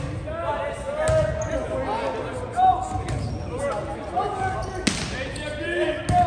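Volleyball struck by hand several times in a gym, sharp smacks about a second in and a louder one near the end, under players' calls and spectators' voices echoing in the hall.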